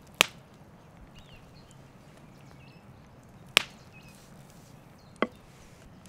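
A large forged kitchen knife chopping down through raw beef brisket onto a wooden cutting board: three sharp knocks a few seconds apart, the last with a brief metallic ring from the blade.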